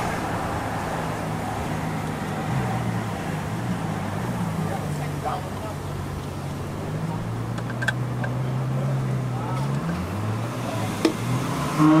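Ferrari F12's V12 engine running at low revs as the car crawls ahead, a steady low note that dips briefly and rises again near the end.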